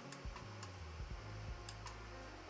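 A few faint, irregularly spaced clicks from computer keys and mouse during brush work in an image editor, over a low steady hum.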